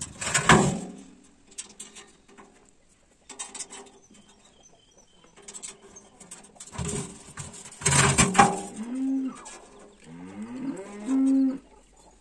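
Cattle mooing: a loud long call about seven seconds in, followed by shorter calls that rise and level off near the end, with faint clicks in the quieter stretches.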